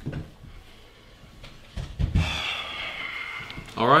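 A few soft low thumps and handling noises in a small room, ending with a man saying "All right."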